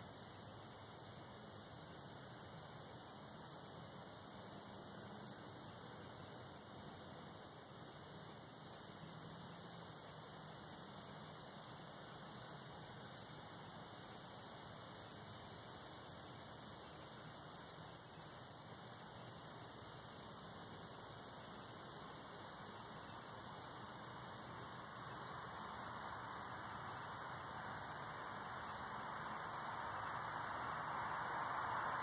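Insect chorus: a steady high trill with a second, pulsing trill a little lower, running without a break. A soft rushing noise grows louder near the end.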